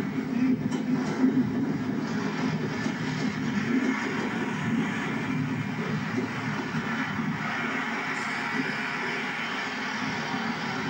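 Class 165 Thames Turbo diesel multiple unit moving along the platform, with a steady engine drone that slowly fades.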